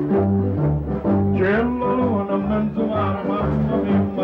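Small live band playing the instrumental introduction of a song: a stepping bass line with a melody and acoustic guitar over it.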